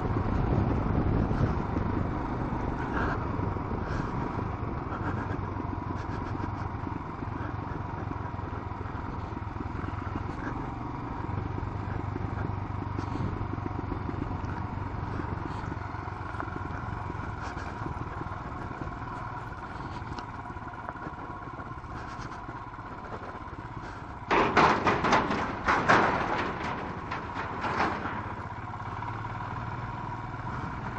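Royal Enfield Himalayan's single-cylinder engine running steadily under way on a rough gravel road, heard from the handlebars, with road and wind noise. Near the end a few seconds of much louder, rough rattling noise cut in over it.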